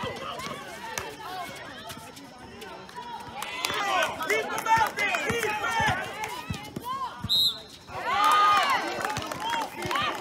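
Voices shouting during a basketball game, louder from about three and a half seconds in and again near the end, over a basketball bouncing on the outdoor court. About seven seconds in there is a short high whistle blast.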